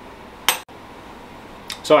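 A single sharp metallic clink, a metal spoon striking a stainless steel saucepan, about half a second in.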